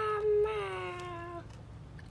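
A single long meow-like call, slowly falling in pitch, with a brief catch about half a second in, ending about a second and a half in.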